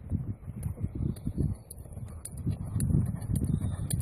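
Wind rumbling on the microphone, with the muffled hoofbeats of a horse cantering on a soft arena surface, drawing closer.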